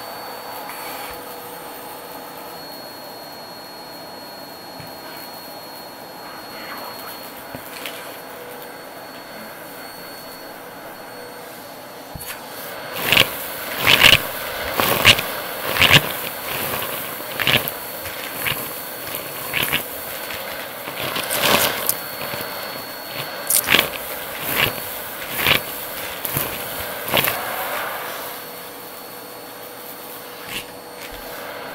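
Vacuum cleaner running through a crevice-tool nozzle, a steady motor hum. From about twelve seconds in, loud crunching bursts roughly once a second as grit and debris are sucked up the tube, easing off near the end.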